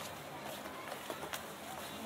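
Faint chatter of passers-by with a few footsteps on stone paving.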